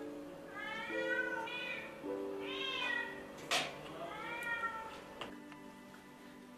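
Domestic cat meowing about four times, each call rising and falling in pitch, over soft background music; a sharp click about halfway through.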